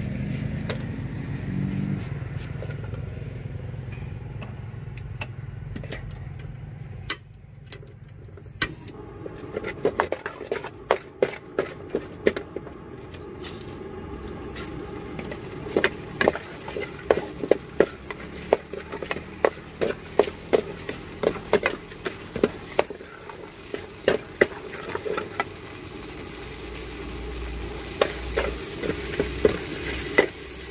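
An engine runs steadily for the first several seconds, then a metal ladle repeatedly scrapes and knocks against a steel wok while corn kernels and sliced onion fry in oil, with a sizzle underneath.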